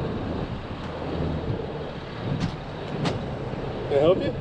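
Steady road traffic noise from cars and trucks passing, with a low engine hum that fades in the first half and two short sharp clicks in the second half.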